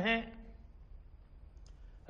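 A man's speech ending on a drawn-out word, then a pause of quiet room tone with a faint low hum.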